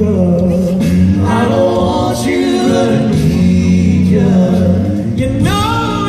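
Five-man a cappella group singing live through an arena PA: held chords in close harmony over a deep sung bass line, with a lead voice bending above them.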